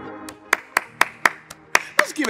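One person clapping hands in a steady rhythm, about four claps a second, starting about half a second in, over quiet background music.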